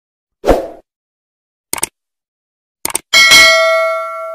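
Subscribe-button animation sound effects: a short thump, two quick double clicks, then a bright bell ding, struck twice in quick succession, that rings on.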